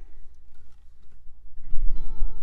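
Acoustic guitar between songs: quiet at first, then a chord strummed near the end that rings on.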